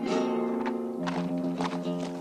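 Dramatic film score: a held chord comes in suddenly and shifts lower about a second in, with a few soft knocks under it.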